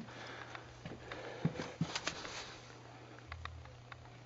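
Faint footsteps and scattered light knocks of a person walking while handling a camera, over a steady low hum.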